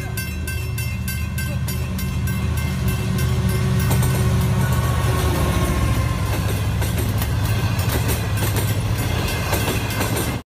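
A train passing close by: a steady heavy rumble with a regular clickety-clack of wheels over rail joints, swelling to its loudest about four seconds in.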